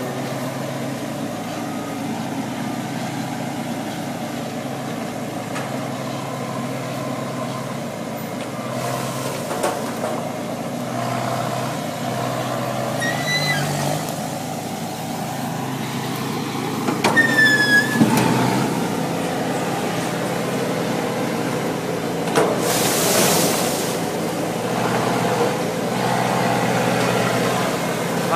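Engine of a Pulcinelli side-by-side tree-shaking harvester running steadily, with a short loud hiss near the end and a few brief high chirps in the middle.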